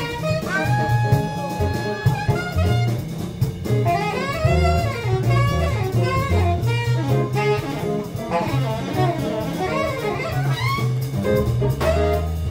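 Saxophone soloing over a jazz band with drum kit and bass: one long held note starting about half a second in, then quick runs of notes that bend up and down.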